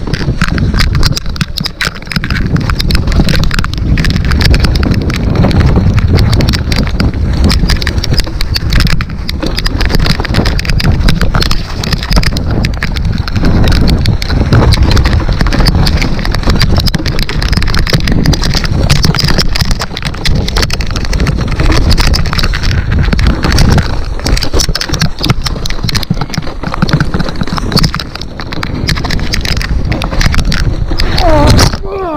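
A mountain bike rattling and clattering at speed over rocks and roots on a rough, wet trail descent: a dense, uneven stream of knocks from the frame, chain and tyres, with a heavy low rumble of wind buffeting the camera microphone.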